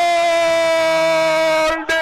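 Radio football commentator's long drawn-out goal cry: one 'gol' held at a steady, slowly falling pitch, which breaks off near the end into rapid speech.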